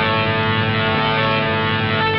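Loud rock band music: electric guitars over bass and drums, playing dense and steady.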